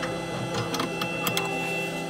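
A few small sharp clicks as the brass blade holder of an xTool M1 is handled and pulled off its mount on the laser head, over a steady hiss with a faint high whine.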